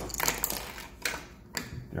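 Hard plastic GoPro mounts and buckle clips clicking and rattling against each other as they are turned over in the hands and set down on a stone countertop, in quick irregular runs of small clicks, busiest in the first second.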